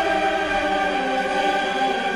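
Classical music: a choir holding sustained notes over an orchestra, at a steady, fairly loud level.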